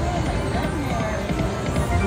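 Drop N Lock Sweet Tweet slot machine playing its free-games music as the reels spin, with voices and casino background noise underneath.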